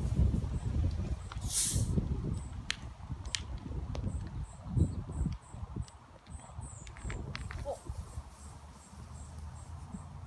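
A short hiss of gas escaping as the cap of a Diet Coke bottle is loosened, followed by a few sharp clicks and knocks of handling and a low rumble that dies away about halfway. A row of faint, evenly spaced cricket chirps runs underneath.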